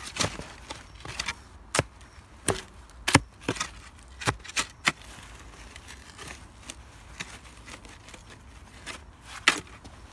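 Steel spade chopping into soil and stony rubble: a dozen or so sharp strikes and scrapes in the first half, then a lull, and one more strike near the end.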